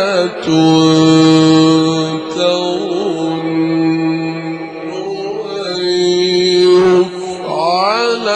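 A male Quran reciter chanting in the melodic Egyptian mujawwad style, holding three long drawn-out notes and then sweeping upward in a rising run near the end.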